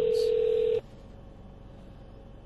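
Ringing tone of an outgoing phone call, played through a Bluetooth speaker: one steady telephone-line tone that cuts off suddenly just under a second in as the call connects.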